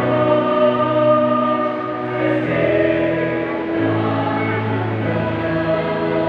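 A choir sings a slow hymn in long, held notes, with the pitch moving every second or two.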